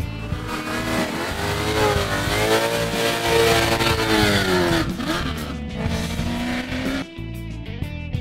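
Rover V8 of the 1985 TWR Rover Vitesse SD1 touring car driven hard with wheelspin: its engine note climbs and then falls away over about four seconds, with tyre noise over it. A steadier engine note follows briefly before background music takes over near the end.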